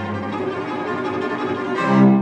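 Background music of bowed strings, violins over a cello line, playing sustained notes that swell louder near the end.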